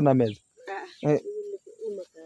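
Short, low, steady-pitched bird calls repeated several times, with brief faint voices between them.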